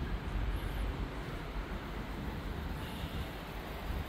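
Steady low rumble and hiss of outdoor background noise, with no distinct events.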